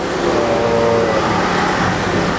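A motor vehicle's engine going past, a loud, steady rush of noise lasting about two and a half seconds.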